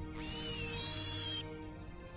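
Soft film-score music with held notes, and over it a high-pitched squeaky call from a newly hatched baby dinosaur, lasting about a second with a wavering pitch.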